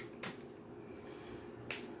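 A deck of cards handled in the hands during shuffling: two crisp snaps, one just after the start and a sharper one near the end, over quiet room tone.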